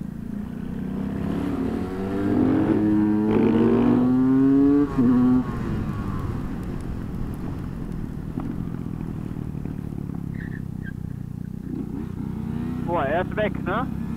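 Supermoto motorcycle engine accelerating with its pitch climbing for several seconds, then dropping suddenly as the throttle closes about five seconds in. It then runs on more steadily and lower, with wind rushing over the helmet camera.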